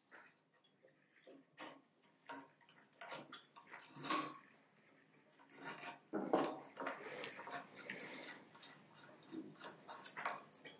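Faint, scattered clicks and light scrapes of metal parts being handled as the mounting bolt of a compound bow's arrow rest is unscrewed. The clicks are sparse at first and come more thickly from about six seconds in.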